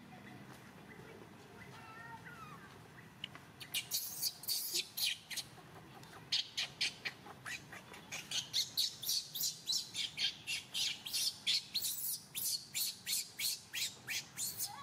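A long series of short, sharp, high-pitched animal calls, about two to three a second, beginning a few seconds in after a few faint chirps.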